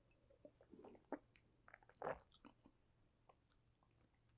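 Faint mouth sounds of a man sipping and swallowing beer while tasting it: a few short soft clicks and sips, the loudest about two seconds in, over near silence.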